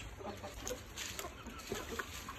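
Chickens clucking faintly, a few soft scattered calls.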